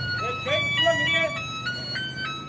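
A simple electronic tune of clean single notes stepping up and down several times a second, with a faint voice beneath it.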